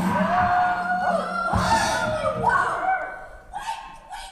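Several voices whooping and shouting excitedly over a low steady note, with a thump about a second and a half in, dying away near the end.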